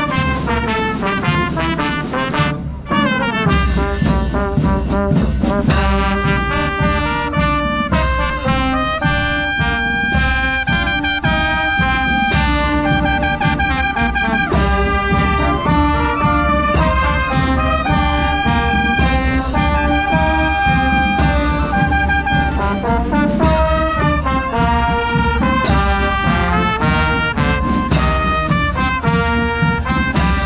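Municipal wind band playing a march-like tune on trumpets, horns, euphoniums and tubas, with a low drum beat coming in a few seconds in.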